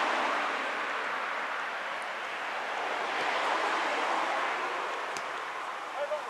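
Steady outdoor background noise with no clear tones, and a single sharp knock about five seconds in.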